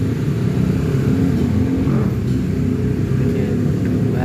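A loud, steady low rumble with nothing above it in pitch, like a running engine heard close.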